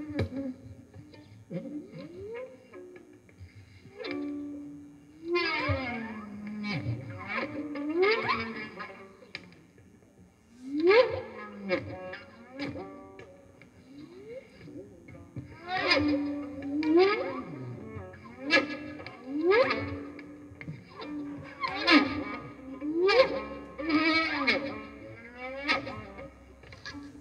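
Free improvisation by violin and saxophone: short phrases of sharply rising sliding notes, repeated every second or so with short pauses between, sparse at first and busier from about halfway.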